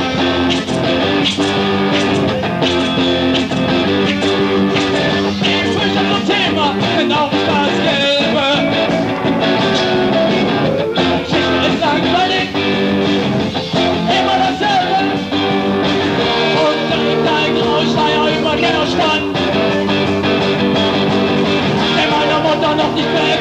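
Punk/new-wave rock band playing live: electric guitar over a driving beat, with a male singer.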